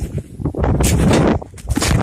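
Thuds and rustling from a person bouncing and landing on a trampoline mat with a phone in hand: a dense burst of knocking and rubbing about a second in, then a few sharp knocks near the end.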